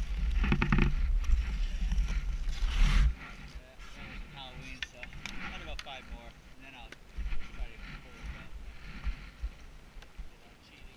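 Low rumble of wind buffeting the microphone while skating on lake ice, cutting off suddenly about three seconds in as the skater stops. Afterwards it is much quieter, with scattered sharp taps of hockey sticks on the ice.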